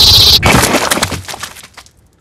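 Film sound effect of a man's head exploding: a loud high whine that cuts off sharply about half a second in, then a sudden burst of rapid cracks and splatter that dies away over about a second and a half.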